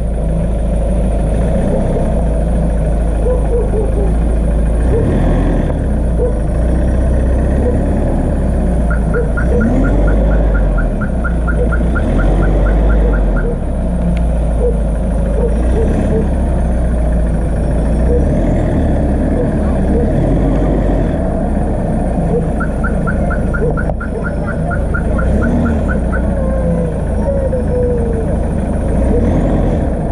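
Mahindra Scorpio SUV engine running with a steady low rumble as the vehicle turns around on a rough dirt road. A rapid high-pitched pulsing comes in twice, in bursts of about four seconds.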